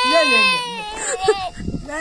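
Toddler crying: one long high-pitched wail held through about the first second, then shorter cries, with an adult's voice alongside.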